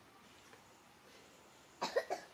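Adult female macaque giving two short calls near the end, a fraction of a second apart, as a warning at the young macaque nursing from her.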